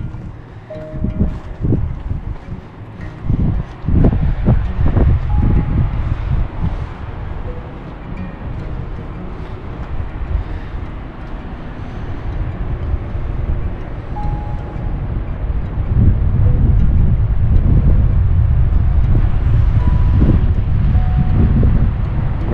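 Wind buffeting the camera microphone: a gusty low rumble that comes in uneven surges, growing steadier and stronger about two-thirds of the way through.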